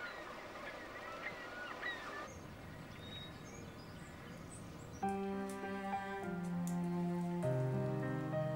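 Birds chirping over a soft ambient hiss for the first couple of seconds. About five seconds in, gentle soundtrack music with long held notes comes in, louder than the birds.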